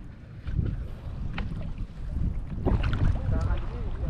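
Shallow sea water sloshing and splashing around the legs of someone wading, with wind buffeting the microphone in an uneven low rumble.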